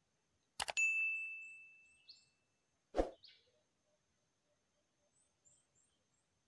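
Two quick sharp knocks, then a ringing ding that fades away over about two seconds; a single louder knock follows about three seconds in, with faint short high chirps in the background.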